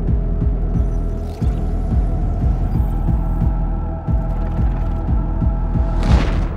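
Electronic trailer score: a low, throbbing synth bass pulses a few times a second under a steady hum and held synth tones.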